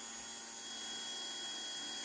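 KTM 690 electric fuel pump running on the bench against a closed outlet, a faint steady whine that grows slightly louder as pressure slowly builds. The slow pressure build-up is, to the mechanic, a sign of a weak pump with unsteady output.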